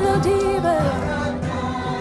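Live Nepali worship song: voices singing together over a steady beat played on a cajón.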